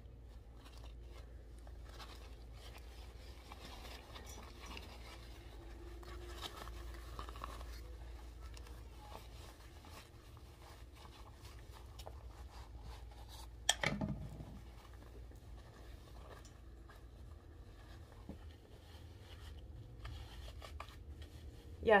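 Faint rustling and scraping of a fabric cap with attached hair and its nylon webbing ties being handled and pulled tight, with one brief louder sound about two-thirds of the way through.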